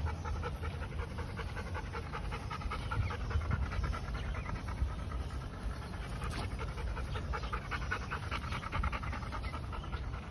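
A dog panting fast and steadily in quick, even breaths, out of breath from running and play.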